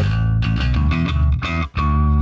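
Electric bass played through a Line 6 Helix modern clean bass patch: a short phrase of several notes with a deep low end and a bright string clank on each attack, which the boosted mids of the post-cab EQ bring out.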